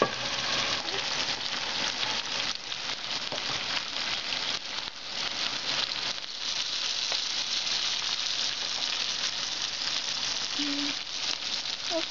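Steady sizzling of food frying on the stove: mushrooms in a saucepan, then chicken breasts with chopped garlic in a nonstick frying pan.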